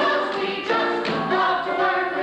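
A stage musical's ensemble cast singing a show tune together in chorus over musical accompaniment.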